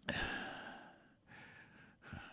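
A man sighing, one long exhale into a close microphone that fades over about a second, followed by a softer breath.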